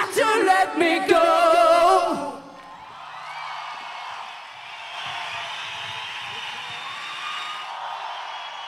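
A rock band's live song ends on a held, wavering sung note about two seconds in, followed by a concert crowd cheering and whooping.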